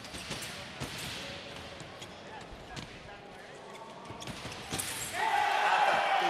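Sabre fencers' feet stamp on the piste, with a few sharp knocks and clicks. About five seconds in, the electric scoring machine's buzzer sounds a loud steady tone as a touch registers.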